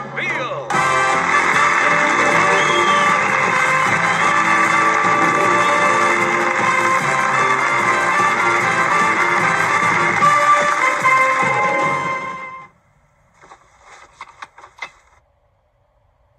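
Television studio audience applauding over loud theme music. Both cut off suddenly about three-quarters of the way through, leaving only a few faint scattered sounds.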